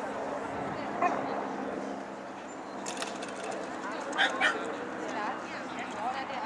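Dog barking: one bark about a second in and two close together about four seconds in, over a steady murmur of voices.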